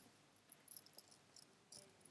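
Near silence: faint background hiss with a few very faint high-pitched ticks.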